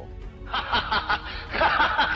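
A man laughing in a quick string of ha-ha bursts starting about half a second in, with music underneath.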